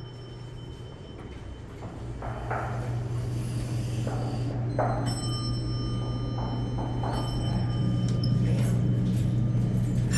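Steady low hum of a 1980s Dover traction elevator that grows louder as the open car is entered, with a few light knocks and footsteps.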